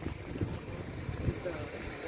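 Low, uneven rumble of wind and handling noise on a handheld phone's microphone during a walk, with a few faint knocks.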